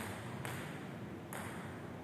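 Table tennis ball being struck back and forth in a rally: three sharp clicks of ball on bat and table, over steady background noise.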